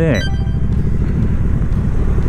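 Triumph Bonneville T120's parallel-twin engine running steadily under way, with rumbling road and wind noise. A brief high ringing tone sounds right at the start.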